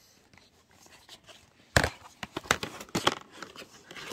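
Handling of plastic packaging: a sharp tap about halfway in, then a run of crinkles and clicks as the wrapper and box are handled.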